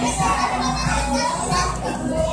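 Music playing steadily, with children's voices chattering over it.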